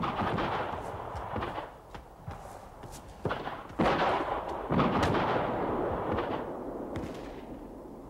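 Scattered gunfire, a ragged string of shots at uneven intervals, each with a long rolling echo.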